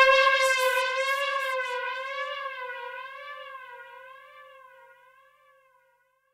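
Sequential Circuits Six-Trak analog synthesizer holding one note with a slow vibrato, about one wobble a second, fading out to silence about five seconds in. A rhythmic pulsing and a bass tone under it stop within the first second.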